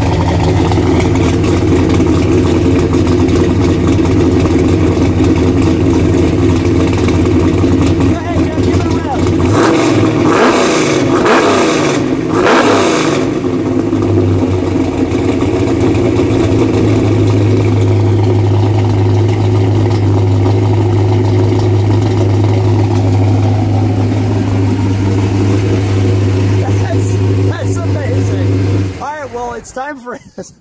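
A 598-cubic-inch fuel-injected Shafiroff big-block Chevy V8 with a radical camshaft, heard loudly at the rear exhaust tips of a 1970 Chevelle SS. It idles, is blipped in three quick revs about ten seconds in, then settles back to a steady idle. The sound cuts off shortly before the end.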